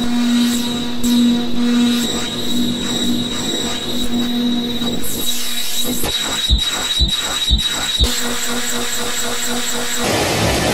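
Black MIDI playback rendered through a Casio LK-300TV soundfont: hundreds of thousands of notes a second blur into a dense, noisy wall of sustained tones with a steady high whine. In the second half, four low thumps land about half a second apart.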